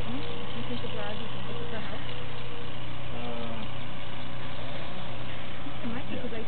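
A steady low hum, engine-like, runs unchanged, with faint voices talking in the background.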